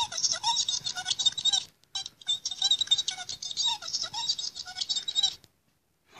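A small plush toy's push-button sound unit playing a tinny, chattering electronic sound through its little speaker. It pauses briefly about two seconds in, starts again and cuts off suddenly about five and a half seconds in.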